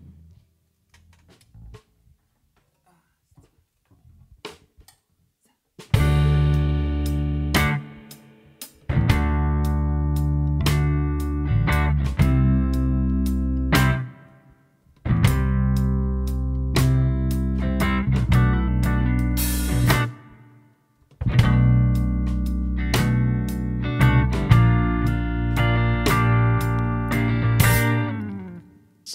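A live band of electric guitar, bass guitar and drum kit playing an instrumental song intro. It comes in after about six seconds of near quiet with a few faint clicks, and plays in phrases of a few seconds, each broken by a short stop.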